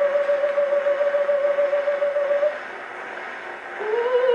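Operatic soprano voice reproduced acoustically from an Edison Diamond Disc on a console Edison phonograph with a True Tone diaphragm. She holds one long note with vibrato, breaks off about two and a half seconds in, leaving a short pause with only the record's surface hiss, and the next note slides in just before the end.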